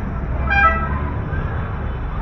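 A vehicle horn gives one short toot about half a second in, over the steady low rumble of street traffic.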